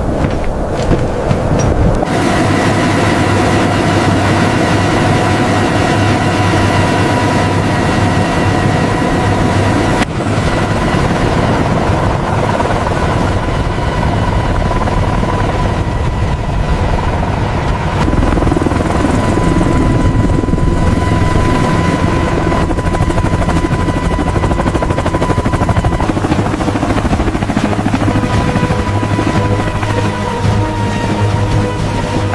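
Heavy-lift helicopter running: a steady turbine whine over dense rotor and engine noise. The sound shifts abruptly about 2, 10 and 18 seconds in.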